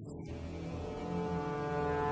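Deep brass horn holding one long, low note rich in overtones, growing a little louder about a second in: the drone of Tibetan ritual long horns in the soundtrack.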